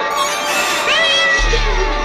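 A cat meowing: one drawn-out call about a second in, rising quickly and then falling slowly, over background music.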